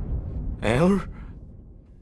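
A man's short wordless vocal exclamation, a single 'eh'-like sound rising in pitch, under half a second long, about half a second in. It comes as low background music fades out.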